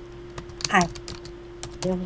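Typing on a computer keyboard: a scattering of irregular key clicks.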